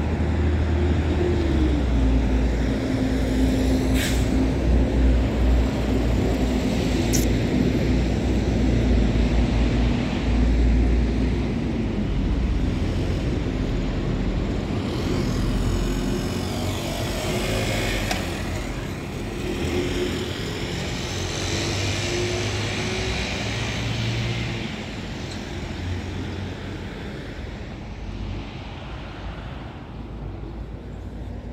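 Road traffic on a wide city street: vehicle engines running, with a steady engine hum that stops about twelve seconds in and a motorcycle passing about halfway through. Two sharp clicks come early in the clip.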